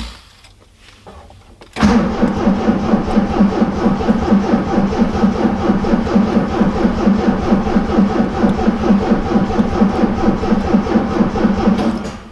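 Triumph TR7's 2.0-litre slant-four being cranked on the starter motor. It begins about two seconds in and keeps up a steady rhythmic churn of several pulses a second for about ten seconds without firing. The engine is not drawing fuel.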